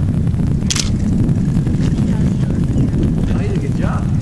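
Low, uneven rumble of wind buffeting the microphone, with one sharp click under a second in and a faint distant voice near the end.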